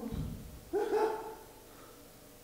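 A person's voice making two short, pitched non-word calls a little under a second in, after a low thump at the start.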